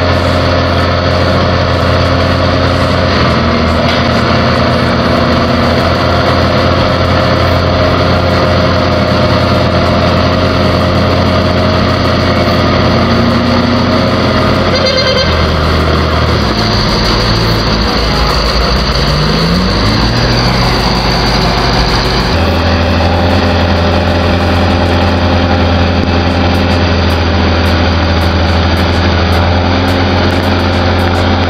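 Heavy diesel engines of a log truck and a wheeled skidder running as a steady, loud low drone. The engine note changes about halfway through, followed by a short rising rev.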